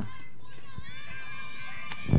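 Several high-pitched young voices shouting and chattering at a distance, overlapping one another over steady outdoor background noise.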